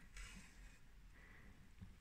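Near silence: room tone with faint handling noise from hands working yarn and a stuffed crocheted toy.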